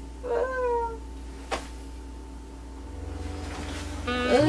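A woman's short, high-pitched wordless whine, rising then falling in pitch, lasting about half a second. A single sharp click follows about a second and a half in.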